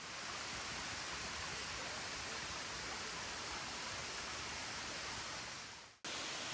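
A rocky creek running, a steady rush of water, swollen after recent rain. The sound fades in at the start and fades out at the end.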